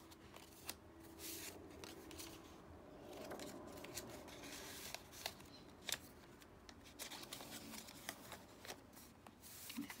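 Faint rustling and sliding of paper and cardstock as tags are handled in small paper bags and a page of a handmade journal is turned, with scattered soft clicks and taps.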